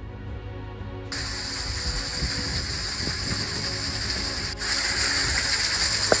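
Background music, joined suddenly about a second in by the steady hiss of a small waterfall spraying down a rock face onto stones.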